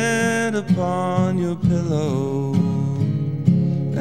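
Male voice singing a slow, held melody over a strummed acoustic guitar. The guitar's tuning is a little off, which the player apologises for.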